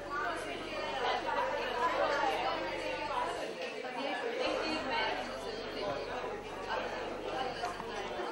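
Speech only: several people talking at once, with no clear single speaker.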